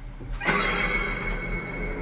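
A sudden shrill sound from a horror film's soundtrack starts about half a second in, holding one steady high pitch as it slowly fades.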